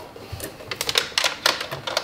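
Irregular light clicks and taps at a sewing machine as a knit sleeve and its elastic are handled and set under the presser foot.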